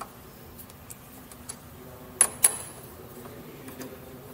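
Two sharp metallic clicks about a quarter-second apart, about two seconds in, with a few fainter ticks, from a T-handle wrench working the clamping screws of a lathe's tool holder to lock the cutting tool in place.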